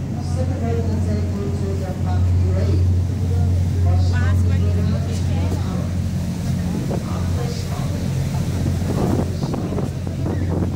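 Boat engine running at cruising speed, a steady low drone throughout, with voices talking indistinctly over it.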